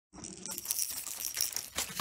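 A hard plastic tray rattling and clattering as it is handled on a newspaper-covered floor, with a puppy's paws scrabbling at it: a quick run of sharp clicks and knocks.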